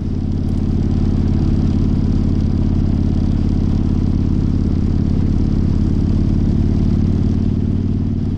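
Harley-Davidson V-twin motorcycle engine running steadily at cruising speed.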